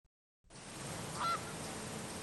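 Outdoor background noise fading in, with one short pitched bird call a little over a second in.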